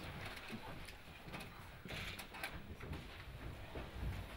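Faint press-room ambience: shuffling and footsteps, with scattered clicks and knocks as people reach the table and pull out their chairs.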